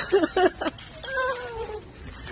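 A woman crying out with emotion while embracing: a few short high-pitched cries, then one long falling wail.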